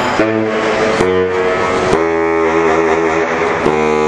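Live rock and roll band playing: a quick run of notes, then a long held chord from about halfway through.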